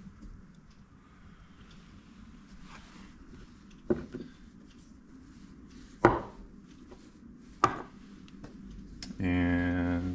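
Heavy steel and cast-iron milling-machine parts handled on a wooden workbench: three sharp knocks spread across a few seconds, the middle one the loudest. Near the end a man gives a long, drawn-out "uhh".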